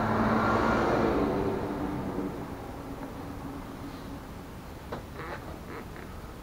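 A motor vehicle driving past, loudest in the first second or so and fading away over the next few seconds. A few light clicks follow near the end.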